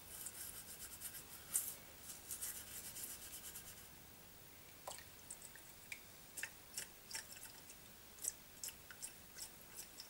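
Toothbrush scrubbing a brass Trangia spirit burner in a bowl of warm water, scratchy and splashy, for the first few seconds; then scattered single drips of water falling from the lifted burner back into the bowl.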